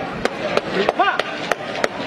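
Six sharp cracks, evenly spaced about three a second, with one man's shouted call to the bull about a second in.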